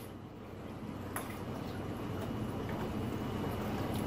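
Water sloshing and bubbling as a plastic egg crate frag rack is pushed under the surface of an aquarium, air escaping from its grid so it sinks. One small click about a second in.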